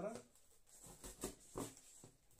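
Makedo safe saw cutting through corrugated cardboard in a few short separate strokes.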